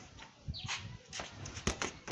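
Irregular thuds and taps of a football being kicked and trapped on a concrete floor, mixed with shuffling footsteps, with the sharpest knock a little past the middle.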